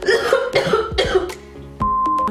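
A woman coughing in several harsh bursts over background music. Near the end a steady high test-tone beep starts, the kind that goes with a colour-bar test card.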